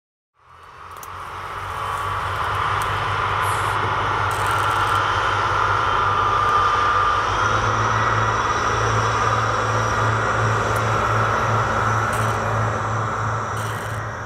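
Steady outdoor rumble and hiss that fades in over the first two seconds, with a low hum that grows stronger in the second half.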